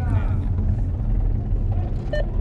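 Steady low rumble of a car's engine and road noise heard inside the cabin, with a brief shouted voice at the very start.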